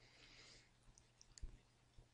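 Faint scratching of a pen writing on paper for about half a second, then a few light clicks and a soft tap as the pen moves on the page.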